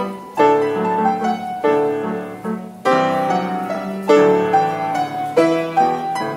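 Grand piano played as a four-hands duet, with chords struck about once a second over a moving bass line.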